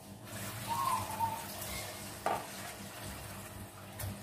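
Soft sizzling hiss of serabi batter cooking in a pan, with one sharp click just past two seconds in.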